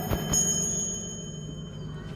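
Music from portable Bluetooth speakers: the beat cuts off right at the start, leaving a few thin, high ringing chime-like tones that fade away.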